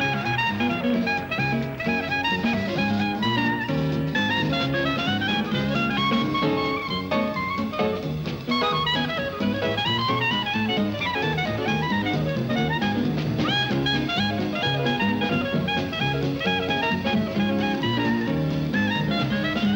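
Jazz clarinet soloing over a swing band's rhythm, playing quick running lines that build momentum.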